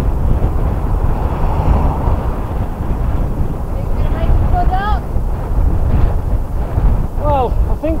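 Heavy, steady wind buffeting the microphone of a camera on a moving tandem bicycle as it rides into a headwind, with brief snatches of voice about halfway through and near the end.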